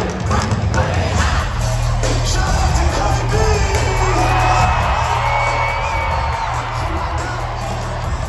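Live hip-hop music played loud through an arena sound system, with heavy bass, while the crowd cheers and shouts over it.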